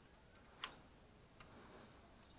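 Near silence broken by two small clicks, a sharp one about half a second in and a fainter one later: multimeter probe tips tapping against the metal contacts of a cordless-drill battery charger.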